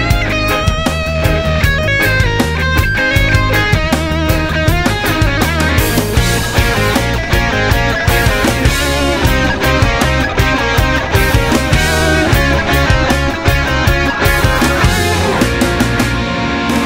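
Instrumental break in a reggae-rock song: electric guitar lines over bass and drums, with no singing. The playing grows fuller and busier about six seconds in.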